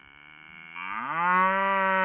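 Intro sound effect for an animated logo: one long pitched tone that starts faint, swells and glides upward in pitch over about a second, then holds steady.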